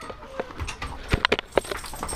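A quick run of sharp clicks and knocks from a metal wire dog crate and a dog's claws as a Belgian Malinois comes out of the crate on a leash. The knocks bunch together in the middle second.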